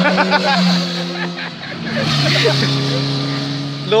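A motor vehicle going by on the road, its steady engine hum dropping to a lower pitch about halfway through.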